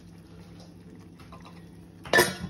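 Water boiling in a steel pot on a gas stove: a faint, steady bubbling.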